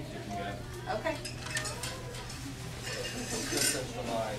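Light clicks and metallic clinks, scattered through the few seconds with a brighter cluster near the end, over a steady low hum and faint background murmur.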